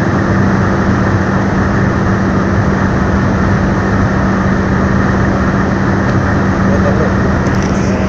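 Tata Manza's Safire 90 petrol engine running at high revs near the car's top speed, heard inside the cabin. A steady drone holds level over a constant rush of noise.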